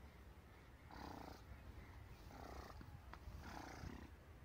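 Faint wind rumble on the microphone, with three soft swishes of wheat stalks rustling about a second apart as people move through the crop.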